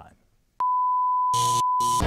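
A steady television colour-bar test tone, a single unwavering beep, starts sharply about half a second in and holds on. Two short bursts of noise cut in over it in the second half.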